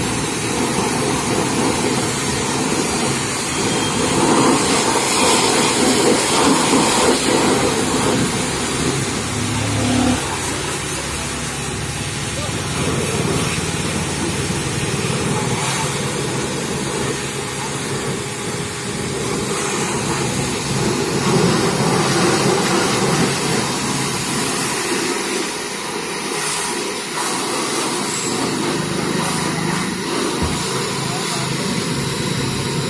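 Pressure washer running, its high-pressure water jet hissing steadily against a mud-caked tractor's wheels and body.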